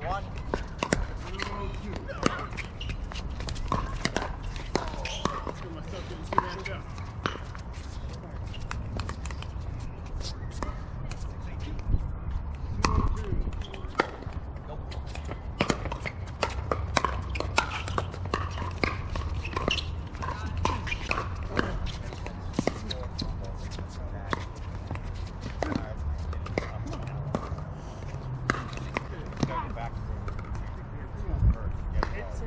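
Pickleball paddles striking the hard plastic ball: sharp pops scattered throughout, sometimes several in quick succession. Indistinct voices run underneath.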